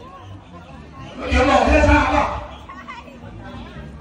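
Speech: a man's voice asking a short question about a second in, with several other people chatting quietly around him.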